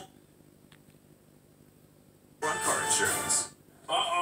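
Television sound heard in a room. It is quiet for about the first two seconds, then comes about a second of loud music and voice from the TV. A man's voice from the TV starts near the end.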